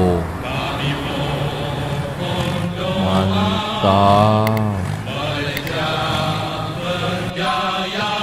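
Male voices singing a military song, with music behind them.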